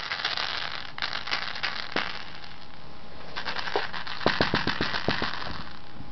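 Rattle ball rattling as a Yorkie plays with it: a steady crackle, with a quick run of clicks about halfway through.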